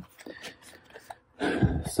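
Tarot cards being handled: faint light ticks, then a short rustle of cards with a soft bump about one and a half seconds in.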